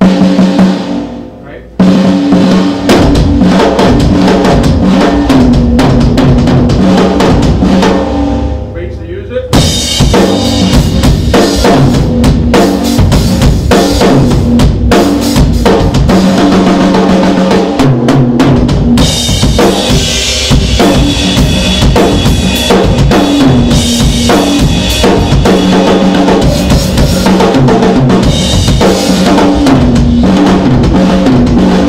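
A ddrum Reflex drum kit with Istanbul Mehmet cymbals played live: one hit that rings out, then from about two seconds in a fast, continuous pattern of bass drum, snare and toms. The cymbals come in louder at about ten seconds and ring brighter again from about nineteen seconds.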